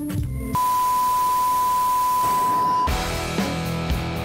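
Intro music breaks off about half a second in for a steady, high, pure beep like a test tone over a hiss of noise. The beep lasts about two and a half seconds and cuts off sharply, and music with plucked guitar notes starts.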